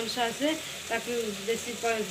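Ivy gourd and potato masala fry sizzling in a pan on the stove, with a voice over it.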